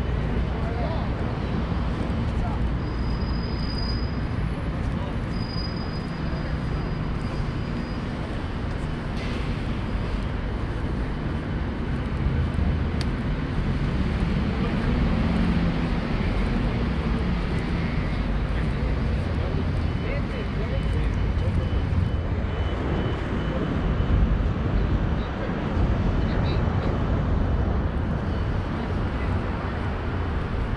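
Street ambience of steady traffic noise and indistinct voices of passersby, with a somewhat louder low rumble about halfway through.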